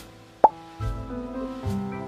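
Soft background music with held notes, cut through about half a second in by one short, sharp pop that is the loudest sound here.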